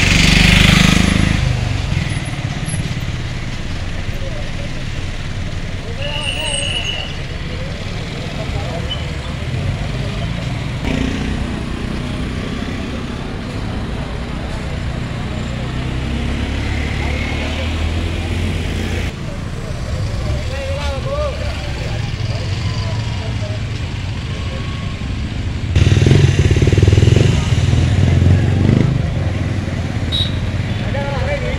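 Vehicles creeping past close by amid a talking crowd: a minibus goes by loudly right at the start, and a three-wheeler's small engine runs close by and grows louder near the end.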